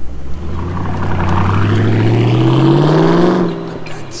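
2006 Ford Mustang GT's 4.6-litre V8 accelerating away from a standstill, its exhaust note rising steadily in pitch for about three and a half seconds, then dropping and fading near the end.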